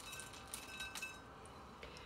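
Pumpkin seeds sprinkled by hand from a glass jar: a few faint, light clinks and ticks, about half a second and a second in.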